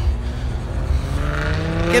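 A car engine revving up slowly, its pitch rising steadily for over a second.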